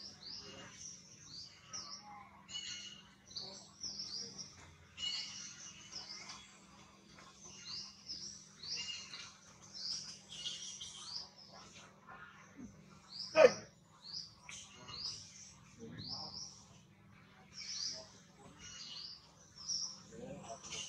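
Forest birds chirping in short, high notes that repeat throughout, with one sudden, much louder short call about 13 seconds in.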